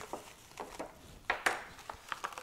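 Cling film crinkling and crackling as it is wrapped around a cured salmon fillet: a handful of short, sharp crackles, the loudest about a second and a half in.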